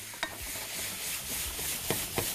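Seafood sizzling as it fries in oil and butter in a nonstick pan while being stirred with a wooden spoon, with a steady hiss and a couple of sharp clicks, one about a quarter second in and one near the end.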